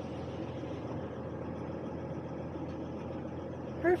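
Winnebago Revel camper van's engine idling while parked, a steady low hum heard from inside the cab.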